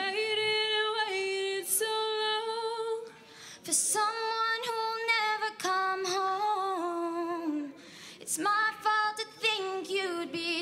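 Young female voices singing unaccompanied through a PA, holding notes with vibrato and pausing briefly between phrases about three seconds in and again near eight seconds.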